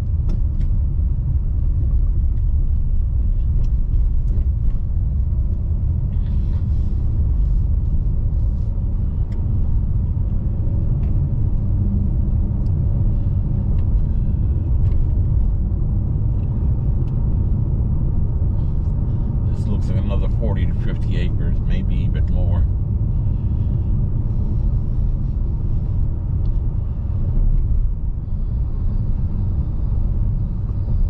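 Steady low rumble of a car's tyres and engine, heard from inside the cabin while driving along a rough, patched road, with a few light knocks.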